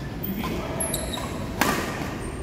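Badminton racket strikes on a shuttlecock during a doubles rally: a faint hit about half a second in, then a sharp, loud hit near the end.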